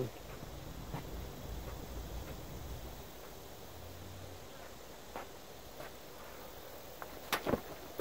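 Quiet outdoor background with a low rumble, a few faint ticks, and two sharp knocks shortly before the end.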